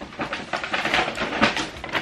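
Shopping bag rustling and crinkling as it is rummaged through, many irregular crackles with no let-up.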